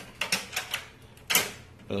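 A plastic push-button on an HP LaserJet M2727nf printer being pressed, giving a few short clicks, the loudest about a second and a half in. The button had been sticking; cleaned with contact cleaner, it now presses and springs back freely.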